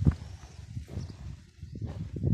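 Footsteps on stony dirt ground: one firm step right at the start, a quieter stretch, then steps again near the end.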